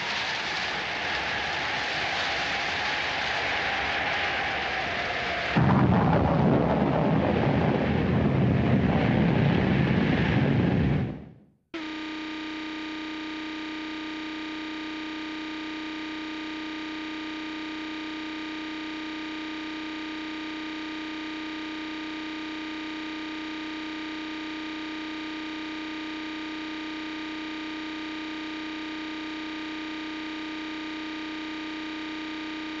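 Film soundtrack of heavy rain, turning about five seconds in into a louder, deeper rumble like thunder or a downpour. It fades out just past ten seconds. After a moment's gap, a steady, unchanging electronic buzzing tone fills the rest.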